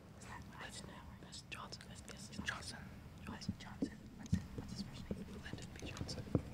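Quiz team members whispering quietly to one another as they confer on their answers.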